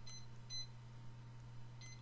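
Faint room tone: a steady low hum with two short, faint high-pitched beeps, one right at the start and one about half a second in.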